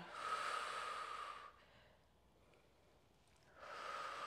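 A woman breathing deeply during a stretch: one long breath lasting about a second and a half, a pause, then another long breath starting near the end.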